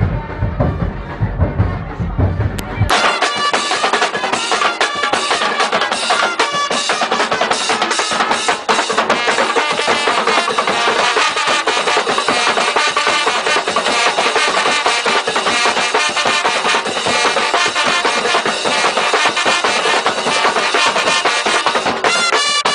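Carnival street band playing, a dense, fast drum rhythm with brass. About three seconds in, the sound changes abruptly, losing its deep bass and turning thinner.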